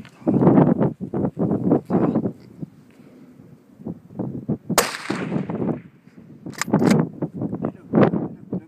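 A single rifle shot about five seconds in, sharp and followed by a short echo dying away; a couple of sharper clicks follow just under two seconds later. Wind buffets the microphone around it.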